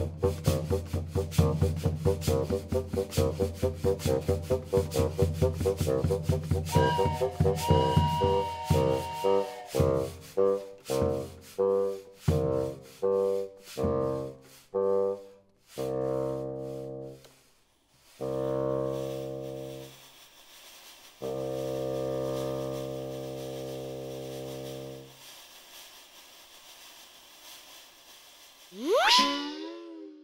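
Flute, clarinet and bassoon with hand percussion playing train music: a fast chugging rhythm that slows down like a train pulling in, then three long held chords like a train whistle. A short swooping sound effect comes near the end.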